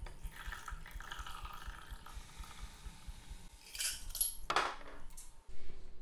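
Cocktail poured in a thin stream from a stainless-steel shaker through its strainer into a martini glass. About four seconds in come two sharp knocks and clinks, the second the loudest, as the metal shaker is set down on the table.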